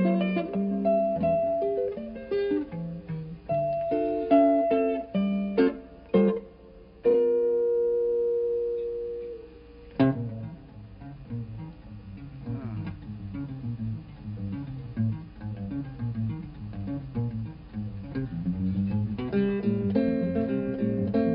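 Archtop jazz guitar played solo: plucked chords and melody notes, with one chord left ringing and fading for about two seconds in the middle. After that, a bass line steps along under short chords.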